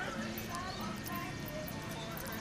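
Barber's scissors snipping hair in quick, irregular clicks, with people talking over them.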